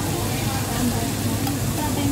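Meat sizzling on a paper-lined tabletop electric grill pan as pieces are set down with chopsticks. Under it run a steady low hum and faint background chatter.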